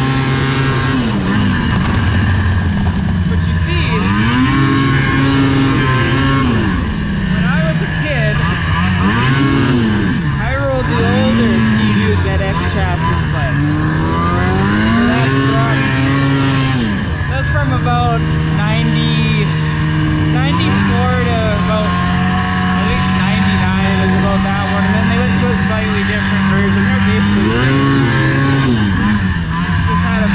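2005 two-stroke snowmobile engine running under way, its revs rising and falling again and again as the throttle is worked. It holds a fairly steady pitch for several seconds past the two-thirds mark, then revs up and back down once more near the end.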